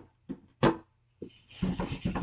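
A man's voice without words: a few sharp breathy outbursts, then rapid pulsing laughter starting about one and a half seconds in.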